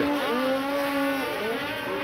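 Several racing snowmobiles' two-stroke engines revving hard at once, their pitch holding, dipping and climbing again as the sleds brake and accelerate through a turn.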